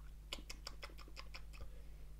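Faint quick series of wet mouth clicks, about six a second for just over a second, as whisky is worked around the mouth while tasting.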